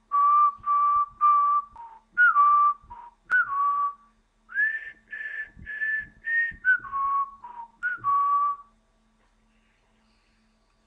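A person whistling a tune of about fifteen breathy notes, mostly held on one or two pitches, with a few short upward slides into the notes. The whistling stops near the end.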